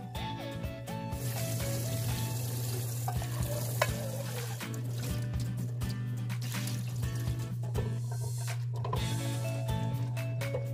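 A pot of fresh green beans at a rolling boil, a steady bubbling hiss. Then come irregular splashes and rubbing as the boiled beans are rinsed and peeled by hand in a bowl of water.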